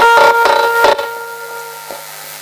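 A Baul folk ensemble ending a song. Violin and accompaniment hold a final note over a few sharp drum strokes in the first second. Then the music drops away, leaving a fainter held tone that lingers.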